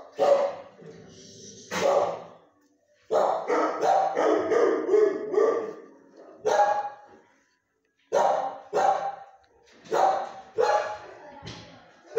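Dog barking in short bouts, with a fast run of barks from about three to six seconds in and single barks after it.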